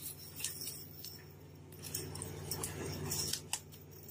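Scattered sharp clicks and taps over a low steady hum.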